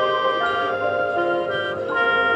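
Marching band playing slow, held chords, with the front ensemble's mallet keyboards; a fuller new chord comes in near the end.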